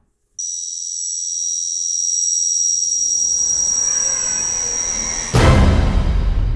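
Logo-intro sound design: a steady, high-pitched ringing tone with a low rumble swelling underneath, then a sudden loud, deep impact hit near the end that keeps sounding.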